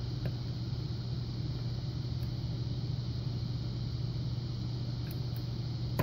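A steady low hum, with a few faint, sparse ticks from a hook pick and tension wrench working the pins of a six-pin lock cylinder during single-pin picking.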